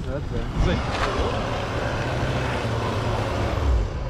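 Diesel SUV engine idling with a steady low rumble.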